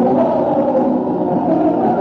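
Muffled, low-fidelity amateur audience recording of a live concert: a loud, dense, steady wash of many overlapping held pitches, with little treble.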